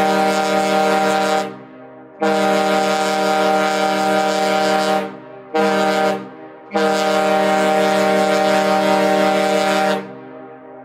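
The ship's horn of the Hurtigruten coastal ship MS Finnmarken sounding one deep, steady note in blasts: the end of one long blast, then a long blast, a short blast and another long blast. Each cut-off leaves a brief fading echo. The horn signals the ship's arrival in port.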